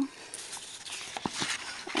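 Card stock being handled and slid into a plastic lever craft punch: soft rustling of card, with a couple of light taps near the middle.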